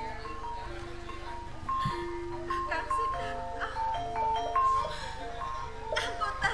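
Javanese gamelan accompaniment playing a melodic line of short, ringing pitched notes, with a voice heard over it.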